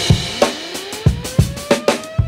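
Drum kit played in a quick beat of kick and snare hits, about three to four a second. A pitched note slides steadily upward over the beat.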